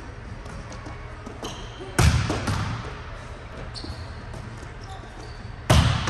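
Volleyball spikes in a large echoing gym: two sharp smacks of hand on ball and ball striking the court, about two seconds in and again near the end, each ringing in the hall.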